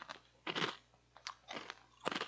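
A person chewing crunchy food, with a louder crunch about half a second in, then a few smaller ones.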